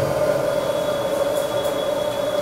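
A steady, sustained droning tone from the stage sound design, with a thin high whistling tone joining about half a second in.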